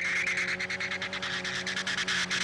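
Car in a burnout: the engine holds a steady pitch while the spinning tyre burns rubber against the floor, the tyre noise pulsing rapidly and evenly.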